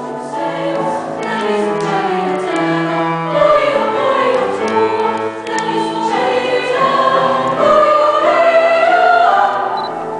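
Treble choir of female voices singing, the lines climbing in pitch and growing louder toward the end.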